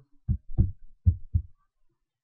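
Four short, low, dull thumps within the first second and a half, then quiet.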